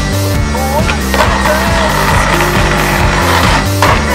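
Skateboard on concrete over music with a steady beat: a sharp clack about a second in, then a couple of seconds of wheel noise that cuts off sharply near the end.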